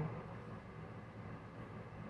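Faint steady background hum and hiss: room tone, with no distinct event.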